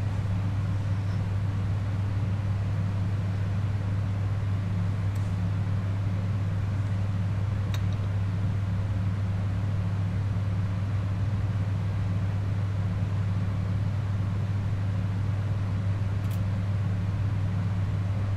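A steady low hum, a constant background drone with a couple of faint ticks.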